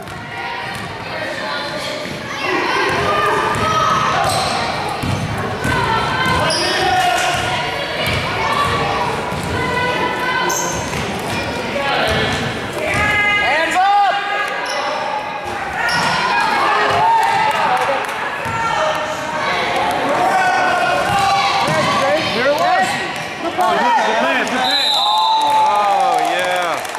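Basketball being dribbled on a hardwood gym floor among the mixed voices of players and spectators, echoing in a large hall.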